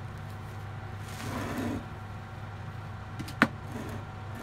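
A steady low electrical-sounding hum, with a soft brushing noise around a second and a half in and one sharp click a little after three seconds in.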